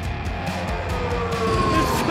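Background music over a Mercedes W10 Formula One car's 1.6-litre turbocharged V6 hybrid engine, whose note falls slowly in pitch through the second half.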